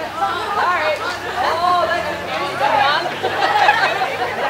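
A group of people chattering, several voices talking over one another with no clear words.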